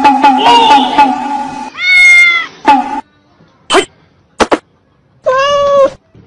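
Cats yowling and meowing: a long, pulsing yowl that ends a little under two seconds in, then a rising-and-falling meow, a short meow, two sharp taps, and a last meow near the end.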